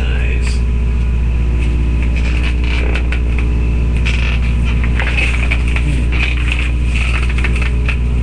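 A steady, loud low hum with many evenly spaced overtones and a hiss higher up, unchanged throughout. Scattered short clicks and knocks sit on top of it.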